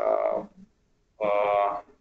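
A man's voice: a word trails off, a short pause follows, then a drawn-out, even-pitched hesitation sound, "eh", about a second in.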